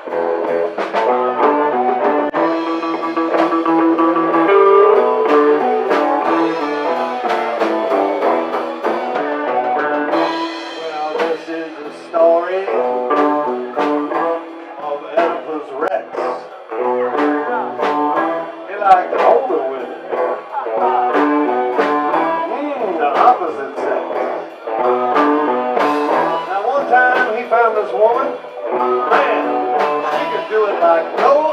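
A live blues band playing: electric guitar over bass and a steady drum beat, with harmonica.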